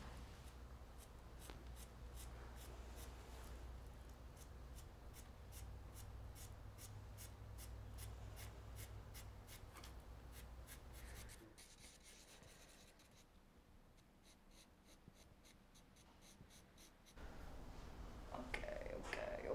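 Faint scratching of a coloured pencil drawn across a painted panel in short, even strokes, about three a second, over a low hum.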